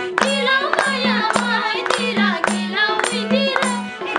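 Nepali live dohori folk song: singing over a harmonium, with a madal hand drum keeping a steady beat, and handclaps and a small hand tambourine clicking in rhythm.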